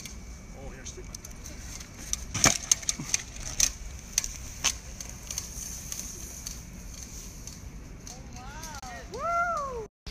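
Scattered cracks and snaps of twigs and brush as a unicycle is ridden down a dirt trail through tall grass, over a steady high hiss. Near the end a person's voice calls out twice, each call rising and falling in pitch.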